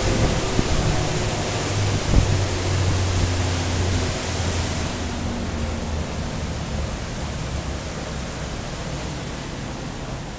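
Twin 350 hp outboard engines running under way, with a loud rush of wind and wake water over a low engine drone. About halfway through the high hiss drops away and the drone eases, and the sound keeps getting quieter as the boat comes off speed.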